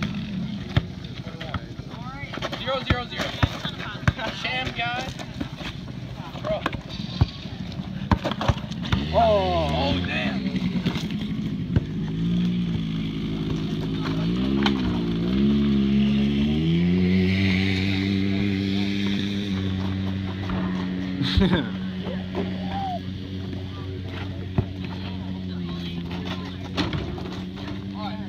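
Small ATV engine running. About halfway through its pitch rises and falls a few times as the throttle is worked, then it holds at a steady speed. Sharp knocks of a basketball bouncing on hard ground come at irregular intervals.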